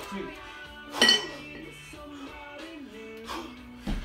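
A pair of 20 kg steel competition kettlebells clanking together with a ringing metallic clink as they drop from overhead into the rack position about a second in. Near the end a dull low thump comes as the next jerk is driven up.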